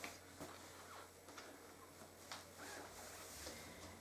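Very quiet room with a few faint light clicks and taps as a moveable-alphabet letter is picked out of its wooden compartment box and set down on a felt mat.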